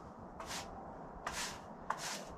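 Sawdust being swept off a freshly sawn board: three short, brisk brush swishes, faint, spread across two seconds.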